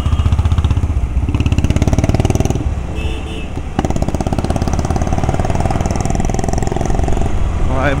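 Motorcycle engine running while being ridden, a fast steady pulsing. It eases off briefly around three seconds in, then a sharp click comes and the engine pulls again.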